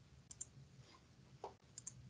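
A few faint computer mouse clicks, two quick pairs about a second and a half apart, over near-silent room tone.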